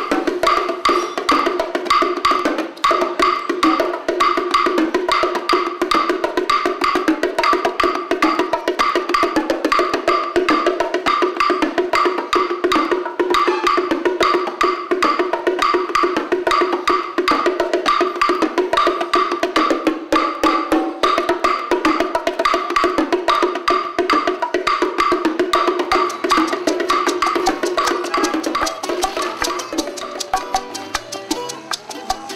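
Bongos played in a fast, steady Afro-Cuban rhythm, with a wooden stick beating a hollow wooden tube in a sharp, clicking pattern.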